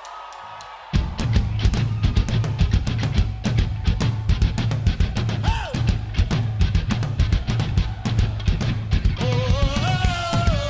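Rock band playing live. A held note sounds alone for about a second, then the full band comes in hard with fast, busy drumming and heavy bass and guitar. A melodic line enters near the end.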